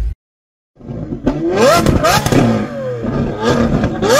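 Intro sound effects: a short countdown beep right at the start, then after under a second of silence a loud roaring logo sting with pitch sweeping up and down.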